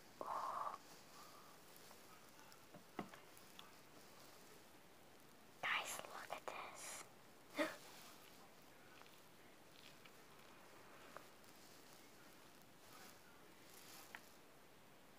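Mostly quiet, with a short soft voiced sound right at the start, then a few seconds of faint whispering about halfway through and a few light clicks from a plastic water bottle being handled.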